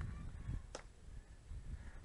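Faint low wind rumble on the microphone, with a single sharp click about three-quarters of a second in.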